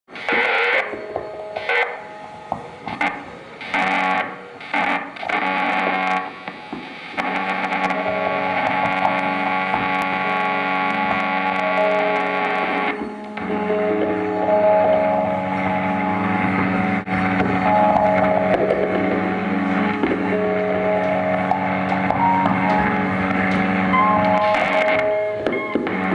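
Distorted electric guitar noise through effects: stop-start bursts for the first several seconds, then a continuous drone of several held tones from about seven seconds in, shifting briefly around thirteen seconds.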